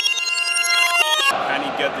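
Sustained musical notes building into a chord, cut off abruptly about a second in by a television football commentator's voice over a steady roar of stadium noise.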